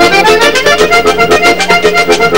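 Vallenato instrumental passage: a diatonic button accordion plays a quick melody over a steady, fast percussion beat.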